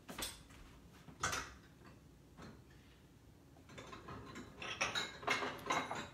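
Dishes clinking in a kitchen as a small bowl is fetched and set out: a few separate knocks, then a busier run of clinks and clatter in the last two seconds.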